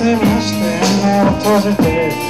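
Live rock band playing electric guitar, bass guitar and drum kit, with regular kick drum beats under sustained guitar chords.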